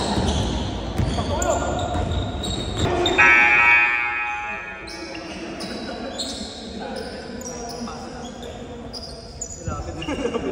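Indoor basketball game on a hardwood court: ball bouncing and short high sneaker squeaks, with voices echoing in the gym. A loud held tone about three seconds in, lasting about a second and a half, is the loudest sound.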